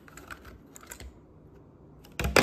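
Faint light clicks and taps of fingers handling a toy car's plastic blister pack on its cardboard card. The clicks cluster in the first second and thin out after.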